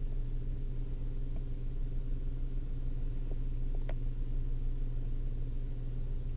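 Steady low drone of a 2013 Ford Focus idling, heard inside the cabin, with a couple of faint clicks about halfway through.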